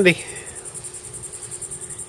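Insects trilling steadily in a high, finely pulsing drone.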